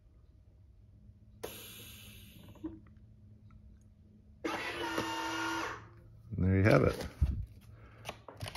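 FoodSaver V4880 countertop vacuum sealer finishing its heat-seal cycle: a low steady hum, with a burst of hissing about a second and a half in and a louder hiss with a whine around four and a half seconds as it releases. A short voice-like sound, the loudest part, follows near the end.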